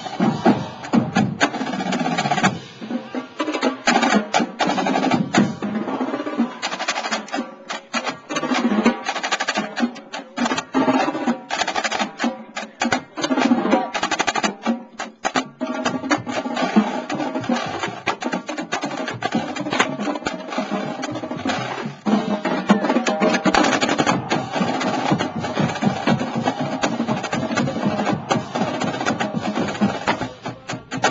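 Marching drumline cadence led by a line of marching snare drums played together: dense, rapid stick strokes with no break.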